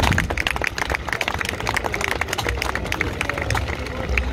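Crowd applauding: many irregular hand claps from the audience, running on steadily.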